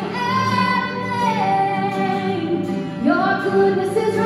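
A woman singing a worship song in long held notes, accompanied by acoustic guitar, with a new sung phrase starting about three seconds in.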